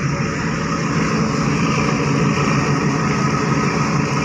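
OceanJet 5 fast ferry's diesel engines running steadily, heard close beside the hull: a constant, loud hum with several steady tones.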